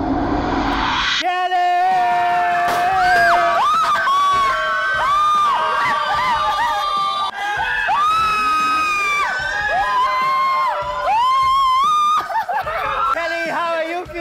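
A rising swell of noise cuts off about a second in. Then a small group cheers and lets out long excited shrieks and whoops over celebratory music.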